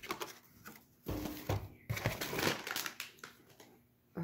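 A plastic snack bag crinkling and rustling against a cardboard box as it is handled and pulled out. The crinkling starts about a second in, is busiest over the middle two seconds and fades near the end.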